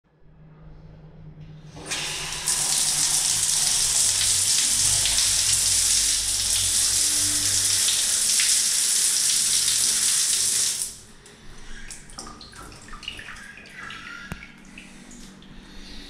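Shower head spraying water onto a tiled shower stall, turned on at the wall valve about two seconds in as a steady hiss, then cutting off suddenly about eleven seconds in. Faint clicks and knocks follow.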